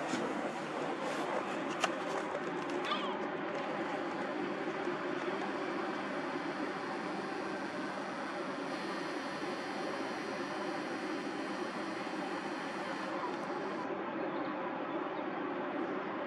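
Steady outdoor background noise, an even hiss with no distinct source, with a single sharp click about two seconds in.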